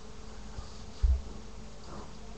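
Faint steady buzzing hum, with one short low thump about a second in.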